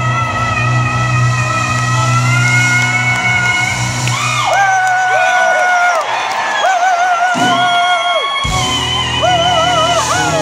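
Female soul singer's voice in live performance with a band, amplified through a PA. A long held note runs over the band, then about four and a half seconds in the low end drops away and she sings held notes with wide vibrato almost alone, and the band comes back in near the end.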